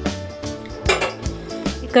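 Steel spoon and steel bowls clinking against each other, a few sharp knocks, as dry spices are scooped out, over background music.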